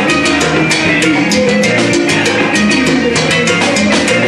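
Live salsa band playing, with timbales, congas and bongos keeping a fast, even beat of sharp strikes over bass and pitched instruments.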